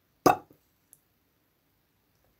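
A single short, sharp pop, a sound effect for the bath plug being pulled out of the tub on its chain, followed by two faint clicks.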